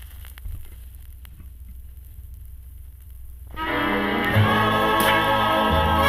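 1956 Webcor Studio phonograph playing a 45 RPM record: faint crackle of the stylus in the lead-in groove over a low hum. About three and a half seconds in, the record's music starts, singing with instruments, through the set's own speaker.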